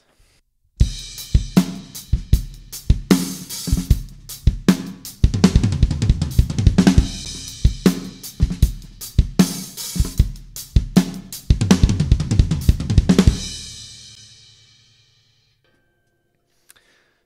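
Acoustic drum kit playing a fast linear drum fill: kick drum followed by single stick strokes moving around the snare, rack tom, floor tom and hi-hat, with no two drums struck at the same time. The hits begin about a second in and run in a dense stream, then a cymbal rings out and fades over the last couple of seconds.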